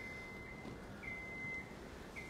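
Bucket lift's motion alarm beeping as the lift moves: a steady high beep about half a second long, repeating about once a second, over faint background noise.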